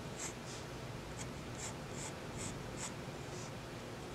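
Pencil sketching on a small paper card: a run of about eight short scratching strokes, roughly two a second.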